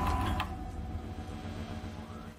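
Sound effect under a title card: a cluster of steady held electronic tones over a low hum, slowly fading.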